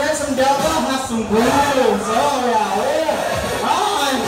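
A voice over the Tagada ride's loudspeaker, drawn out and gliding up and down in pitch, with music playing behind it.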